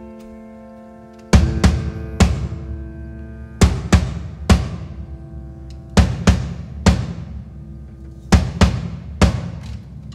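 Instrumental break of a live acoustic band: a held chord fades, then from about a second in, heavy drum strikes ring out in a repeating figure of three hits about every two and a half seconds, over sustained guitar and piano.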